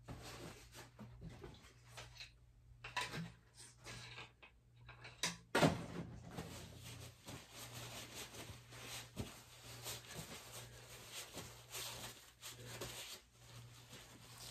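Faint, scattered knocks and rustles of objects being handled, with one sharper knock about five and a half seconds in, over a steady low hum.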